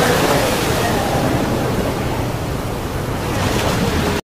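Strong wind and heavy seas breaking against a ship's bow in a storm: a loud, steady rush of wind and water, with wind buffeting the microphone.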